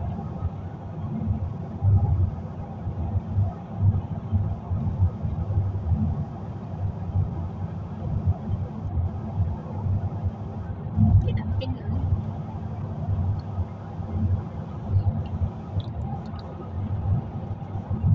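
Low, uneven rumble of a road vehicle driving at speed on a highway, heard from inside the cabin: tyre and engine noise.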